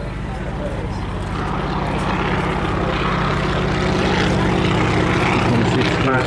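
Boeing P-26 Peashooter's nine-cylinder Pratt & Whitney Wasp radial engine and propeller in a low flypast, growing steadily louder as the aircraft approaches.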